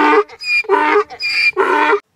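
Donkey braying: a repeated hee-haw, about three cycles of a short, high, squeaky note followed by a longer, lower one.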